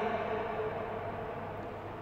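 A pause in a man's amplified speech in a large hall. The echo of his voice dies away slowly, leaving a faint low hum.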